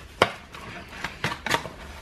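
Light, sharp knocks and taps as objects are handled and set down: one about a quarter second in, then two more close together past the middle.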